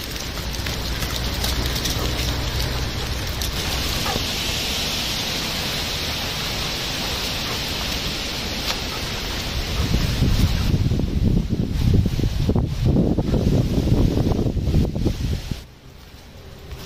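Steady rustling hiss, then from about ten seconds in a heavier, uneven rumble of wind and handling noise on a handheld microphone carried through woodland. It drops away sharply just before the end.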